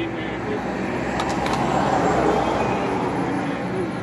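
A road vehicle passing close by, its noise building to a peak about halfway through and then fading, with faint chanting underneath.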